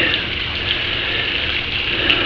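Pool fountain spray splashing back down into the pool water: a steady, even splashing.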